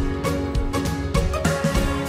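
Background outro music with sustained notes over a steady drum beat.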